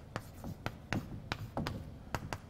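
Chalk writing on a blackboard: a quick, irregular series of sharp taps and short scrapes as each stroke lands.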